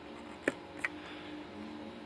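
Metal tweezers clicking on a small DIP switch on a server motherboard: two light clicks about a third of a second apart, over a faint steady hum.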